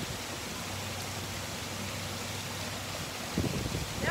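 Small rock waterfall spilling into a swimming pool: a steady rushing splash of falling water.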